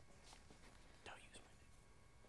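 Near silence: room tone, with a few faint soft rustles of a sheet of paper being handled at a desk, the clearest about a second in.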